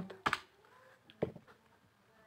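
Plastic keys of an Orpat desktop calculator pressed a few times as a multiplication is keyed in. There is a quick double click near the start, then two single clicks a little after a second in.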